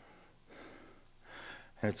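A man's breathing in a pause between sentences: two soft, audible breaths, then speech begins near the end.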